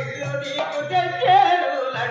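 Folk singing from a stage performance: a voice holding long notes that waver and bend, over a steady drum beat.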